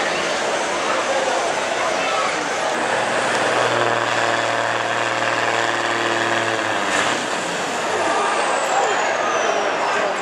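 Diesel semi truck engine running at a steady pitch for a few seconds over crowd chatter. A short burst follows, then a high whine falling in pitch near the end.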